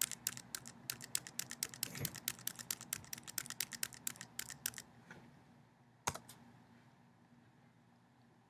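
Computer keyboard keys being pressed: a quick run of keystrokes, several a second, for about five seconds as the Tab key steps through a website's navigation links. A single firmer keystroke follows about six seconds in, the Enter key opening the chosen link.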